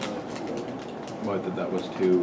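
A man's low, indistinct murmuring voice, with a few sharp clicks in the first half second from laptop keys.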